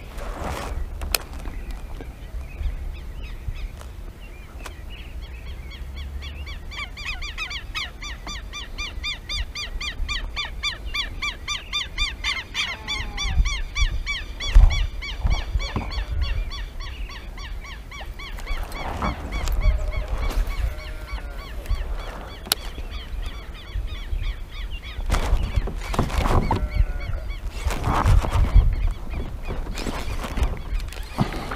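Birds calling outdoors: a long run of rapid, harsh repeated notes for the first half, then scattered shorter calls, with a few brief noisy bursts in the second half and a low wind rumble underneath.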